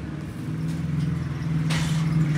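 Steady low hum of an engine running at idle, with a short hiss near the end as the soldering iron meets the wire.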